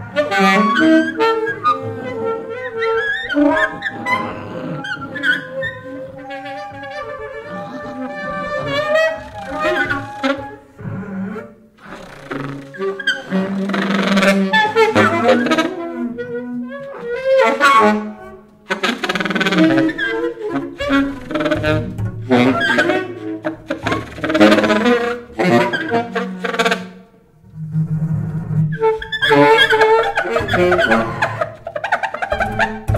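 A small jazz octet playing: saxophones over bowed violin and double bass, in phrases that swell and break off into short pauses.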